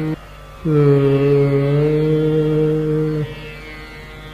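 Hindustani classical vocal in Raag Darbari Kanhra: a male voice holding long, slow notes over a tanpura drone, with no drum. After a brief breath break near the start, the next note enters with a slight dip in pitch, settles and is held, then drops away near the end, leaving the softer drone.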